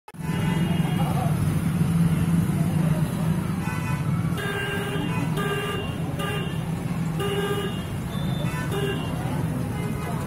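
Street traffic and crowd noise with a steady low drone underneath. From about four seconds in, a vehicle horn gives six short toots.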